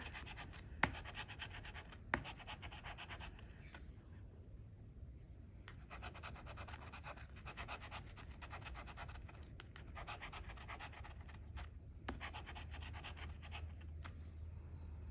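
Faint, rapid scraping of a scratcher tool rubbing the coating off a scratch-off lottery ticket, in quick strokes with short pauses. There are a couple of sharper clicks in the first two seconds.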